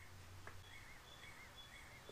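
Near silence: quiet room tone with a low hum, and a bird chirping faintly in a steady run of short repeated notes, about three a second. A faint click about half a second in.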